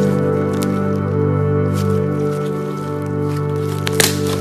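Fluffy slime squeezed and pulled between the fingers, squishing a few times, over steady background music.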